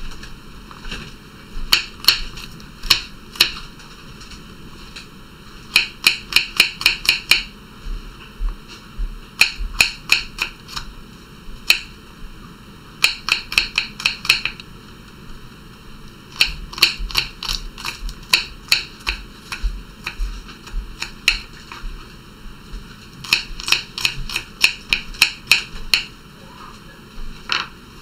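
Small paring knife chopping garlic cloves on a wooden cutting board: quick runs of sharp taps, about five a second, in bursts of a second or two with short pauses between.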